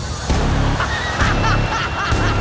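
Shrieking, screaming laughter from the judges and audience, breaking out about a second in and going in quick repeated peals, over dramatic background music.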